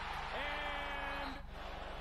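A faint voice holding one steady pitch for about a second, over a low steady hum.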